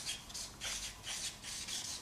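Marker pen writing on a sheet of paper pinned to a board: several short, scratchy rubbing strokes as letters are drawn.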